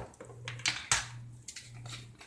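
A few light clicks and knocks of red plastic measuring spoons being handled and set down on a countertop, over a steady low hum.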